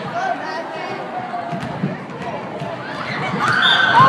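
Crowd of students chattering in a gym, with a few basketball bounces on the court. Near the end the voices rise and get louder, with a short high-pitched shout.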